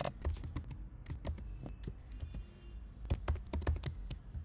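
Typing on a computer keyboard: irregular key clicks, with a quicker run of keystrokes about three seconds in.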